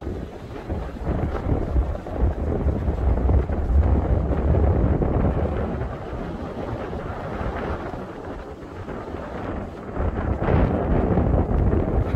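Wind buffeting the microphone in a deep rumble that swells and eases in gusts, over the wash of waves breaking on rocks at the foot of a sea cliff.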